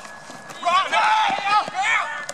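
People shouting and yelling in high, strained voices, starting about half a second in, with no clear words.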